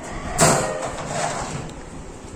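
A scraping rattle starts suddenly about half a second in and fades over the next second: a plastic tray being slid out of a wire birdcage.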